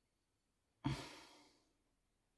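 A person sighing once, about a second in: a sudden breath out that fades away over about half a second.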